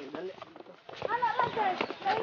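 A person talking, a voice that starts about a second in after a short lull, with scattered light knocks around it.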